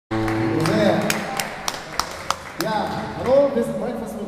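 An acoustic guitar chord rings out at the start, then a man's voice on a stage microphone over a run of about five evenly spaced sharp clicks, roughly three a second.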